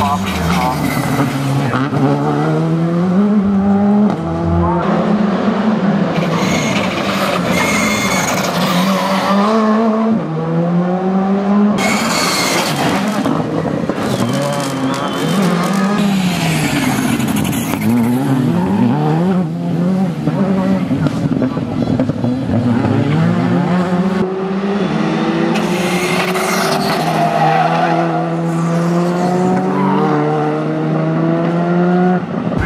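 R5 rally cars' turbocharged four-cylinder engines revving hard, the pitch repeatedly climbing and dropping with gear changes and lifts. There are several bursts of tyre squeal as the cars slide through tight corners.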